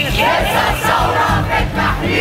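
A large crowd of protesters shouting together, many voices at once, over a music track whose steady low beat continues underneath.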